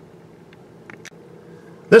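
Faint, steady interior hum of a 2017 Kia Niro Hybrid moving slowly, heard from inside the cabin, with a few faint clicks near the middle.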